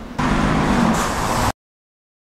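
Street traffic: a road vehicle's engine running loudly with a steady low hum, starting suddenly and cutting off abruptly after about a second and a half.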